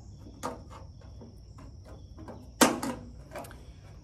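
Hand crimping pliers pressing a gutter end cap against the metal gutter: a few short, sharp metallic clicks, the loudest about two and a half seconds in, as the jaws squeeze a dent into the metal to lock the cap on. Steady high-pitched insect chirring runs underneath.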